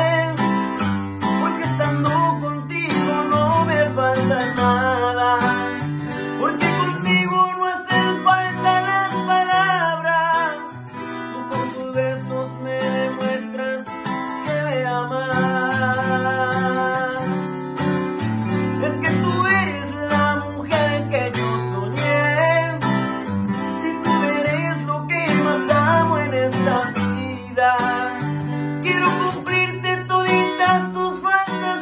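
Takamine acoustic guitar strummed in steady chords while a young man sings a ballad over it, his voice rising and falling with a little waver on held notes.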